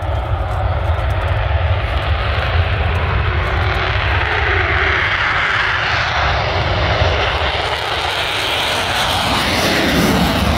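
F-22 Raptor's twin afterburning turbofans at full power through a takeoff run and steep climb: loud, continuous jet noise with a deep rumble underneath. The hissing upper part swells about four seconds in as the jet lifts off.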